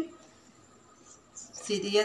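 Quiet small room with a faint, brief sound of a marker on a whiteboard about a second in, then a woman's voice starts speaking near the end.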